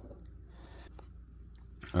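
Faint handling sounds: a few light clicks and taps from hands moving things about on a wooden desk, over low room tone.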